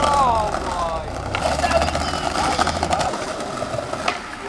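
Skateboard wheels rolling over brick paving, a steady rumble that stops about three seconds in, with a brief voice calling out at the start.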